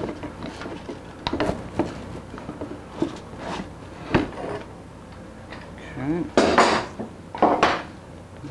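Clamps and small wood-and-metal hardware clicking and clinking as they are taken off a guitar side-bending machine and set down on a wooden workbench: scattered light clicks, then a couple of louder clatters near the end.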